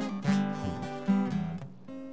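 Acoustic guitar strummed in a chord pattern, with strong strokes about a quarter-second in and again about a second in, dying away near the end.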